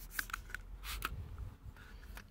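Trigger spray bottle of P&S Dream Maker gloss amplifier spritzing onto car paint: a few short hissing sprays within about the first second.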